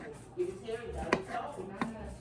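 Kitchen knife slicing a cucumber, the blade striking the countertop three times, roughly two-thirds of a second apart.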